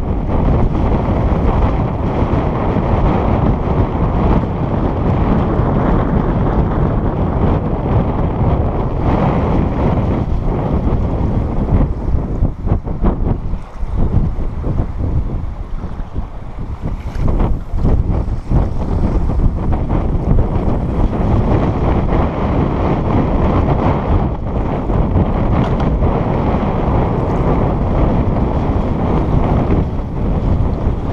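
Strong wind buffeting the microphone: a loud, continuous, gusting rumble that eases briefly about halfway through.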